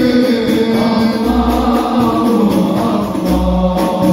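Sholawat sung by a lead voice on a microphone with a crowd of men singing along, over a deep low beat that comes about every two seconds.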